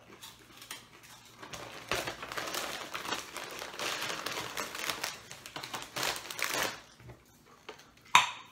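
Crinkling of a bag of pumpkin corn chips as a hand rummages inside it and pulls chips out. The crackling starts about two seconds in and stops shortly before the end.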